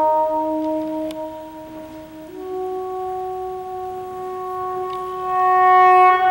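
Soprano saxophone playing a slow melody in long held notes, rising to a higher, louder note near the end.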